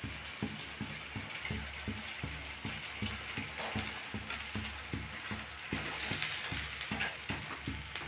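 Paneer pakoras frying in hot oil in a kadhai: a steady sizzle with many small irregular crackling pops, several a second, as a spoon turns them.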